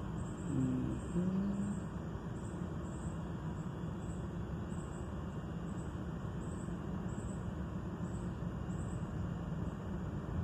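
Steady low background rumble, with a brief low hum in the first two seconds and a faint high chirp repeating about twice a second.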